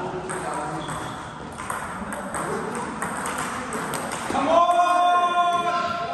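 Table tennis ball clicking off bats and table during a rally, over background voices. About four seconds in, a voice calls out in one long, held note.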